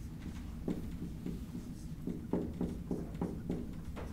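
Marker writing on a whiteboard: a series of short, soft, irregular taps and strokes as an equation is written.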